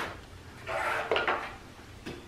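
Light clatter of a multimeter and its test leads being handled and set down on a steel table, twice in quick succession about a second in.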